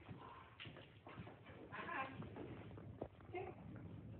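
A dog's claws and a person's footsteps tapping on a hard tiled floor as the dog walks on a leash: a loose run of quiet clicks and taps.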